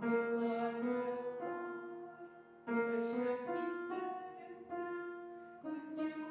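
Upright piano playing a slow passage of held notes and chords, with new phrases struck about 1.5 s in, about 2.7 s in and near the end. The music is built on the B–F tritone.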